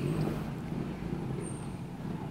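A steady low motor rumble.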